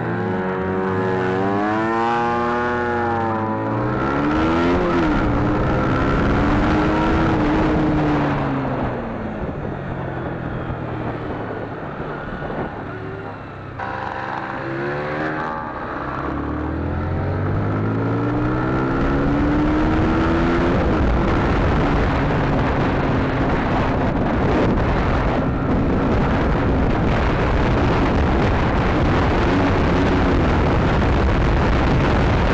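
Honda CBR125's single-cylinder four-stroke engine accelerating through the gears, the pitch climbing and dropping back at each shift, easing off around 12 seconds in and pulling up through the gears again. In the last third, wind noise on the microphone drowns most of the engine.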